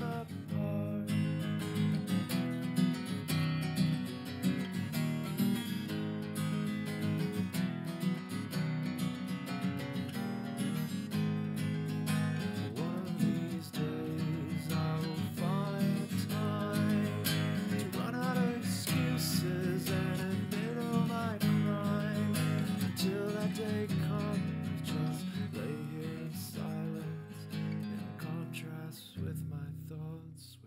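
Acoustic guitar strummed steadily in an instrumental passage of a song, growing quieter over the last few seconds.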